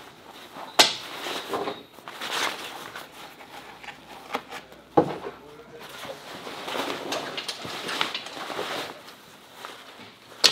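Press snaps popping apart as the camper's tent fabric is pried off its snap studs, sharp clicks about a second in and again about five seconds in, with lighter clicks and fabric rustling between.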